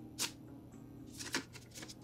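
A few short, crisp paper rustles of banknotes being flicked through and counted by hand, over quiet background music.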